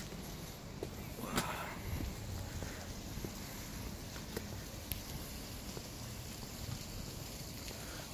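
Wind rumbling on a handheld phone's microphone while walking outdoors, with faint footstep clicks on pavement. A brief vocal sound comes about a second and a half in.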